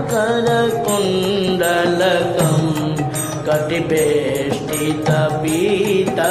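Hindu devotional hymn music: a wavering, melodic line, likely sung in Sanskrit, over a steady instrumental accompaniment.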